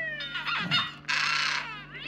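A person's high-pitched vocal sounds: short squeaky calls, then a harsh, squawk-like shriek about a second in.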